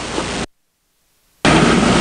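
Steady hiss of recording noise, cutting to dead silence for about a second midway, then coming back louder.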